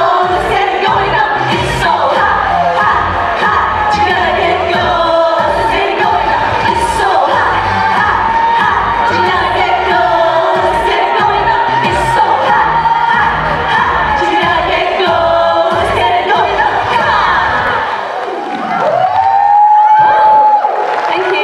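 Women's voices singing live into microphones over an upbeat dance-pop song with a steady beat, with a crowd cheering along. Near the end the beat stops and one voice rises into a single held note.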